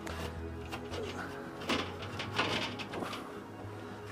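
Background music, with a few light metallic clinks and rattles from the steel cooking grate of a kettle charcoal grill as it is set in place and shifted by hand.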